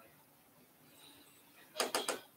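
A quiet room, then a quick run of two or three sharp taps near the end, typical of a stylus striking the glass of a touchscreen board while writing.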